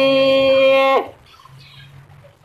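A woman singing a long, steady held note in a Tày phong slư folk love song, which stops about a second in and is followed by a quiet pause.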